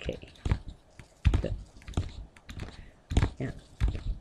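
Pen stylus tapping on a tablet computer's screen: a series of irregular sharp taps, about one or two a second, as dots are marked in and a word is handwritten.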